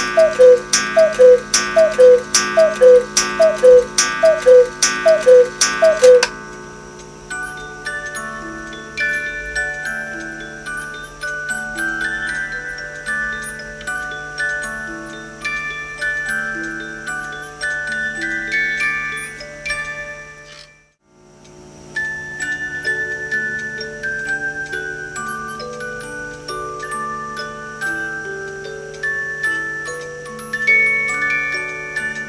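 Black Forest 8-day cuckoo clock calling the hour: two-note falling cuckoo calls, each with a click of the bellows, about one a second for the first six seconds. Then the clock's music box plays a melody of plucked notes, breaking off briefly about two-thirds of the way through and starting up again.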